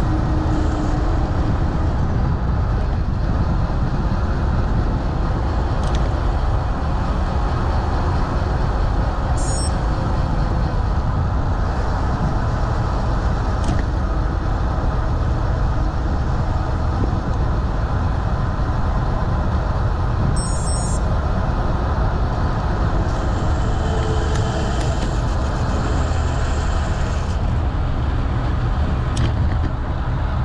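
Steady rushing wind noise on a moving action camera's microphone, mixed with the rolling noise of the ride over asphalt.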